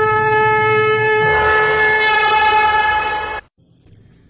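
Conch shell (shankh) blown in one long, steady note that grows brighter a little over a second in and cuts off abruptly about three and a half seconds in.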